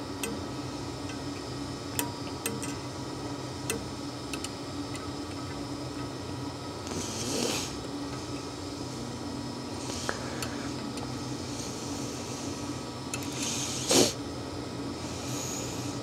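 Faint small clicks and two brief rustles of hand work at a fly-tying vise as copper wire is wound in open turns over a tinsel body, with a sharper tick near the end, over a steady low room hum.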